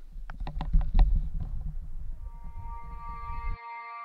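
Wind buffeting a handheld camera's microphone, with a few sharp handling knocks in the first second and a half. Ambient music fades in from about two seconds in, and the wind noise cuts off abruptly near the end, leaving the music.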